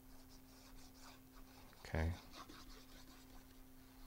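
Faint scratching of a glue tube's nozzle dragged along the edges of cardstock, with light paper handling, over a low steady hum.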